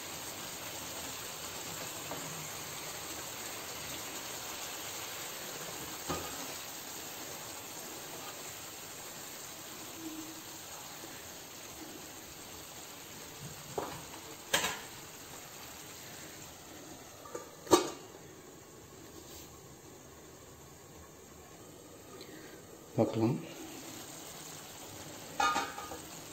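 Fish in coconut-milk gravy simmering and sizzling steadily in a pan over a medium-low gas flame, the hiss slowly easing. A couple of sharp utensil clicks in the middle.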